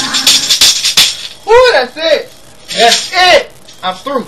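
A hand tambourine is struck and shaken several times in the first second as the recorded choir music ends. Then a man's voice calls out loudly twice, with tambourine jingles alongside.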